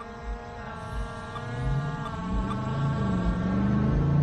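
Skydio 2 drone hovering, its propellers giving a steady, many-toned whine. In the second half a lower vehicle drone swells and grows louder, as of a car approaching.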